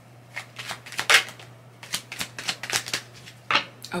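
A deck of tarot cards being shuffled by hand: a run of quick, irregular card strokes lasting about three seconds.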